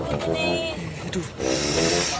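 A person's voice exclaiming "aduh", followed by a short burst of hiss near the end.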